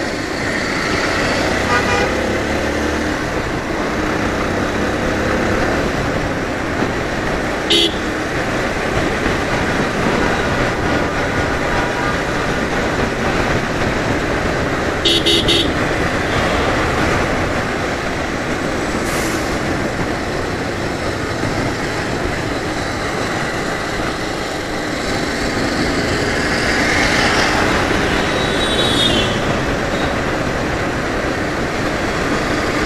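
Motorcycle riding through town traffic, its engine and wind noise running steadily as it speeds up. A short vehicle horn beep sounds about eight seconds in, and a quick double beep around fifteen seconds.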